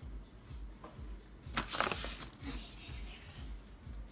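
A metal spoon digging into a plastic pouch of whole chia seeds, the bag crinkling and the seeds rustling. There is one loud rustle about a second and a half in, lasting about half a second, with lighter scratching before and after.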